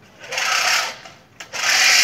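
Manual push reel lawn mower cutting grass: its spinning reel blades whir and snip against the bed knife in two noisy bursts, each lasting under a second, one for each push.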